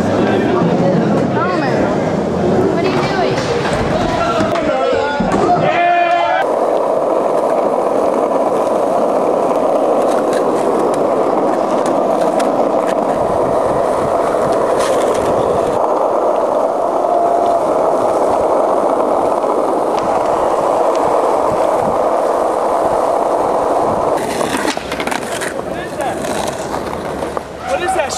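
Skateboard wheels rolling in an indoor bowl for the first few seconds, with voices. About six seconds in it cuts to the steady rolling noise of skateboard wheels on street asphalt. That noise breaks off near the end into a few scattered knocks.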